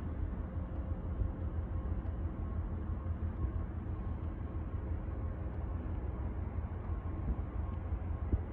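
Steady low rumble with a hiss over it, outdoor background noise picked up by the phone, with a faint steady hum running through it.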